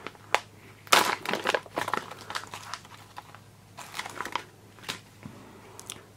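Thick plastic packaging of a flat-fold H-bandage pressure dressing being torn open by hand and crinkled as the bandage is freed, in irregular short rips and rustles, the loudest about a second in.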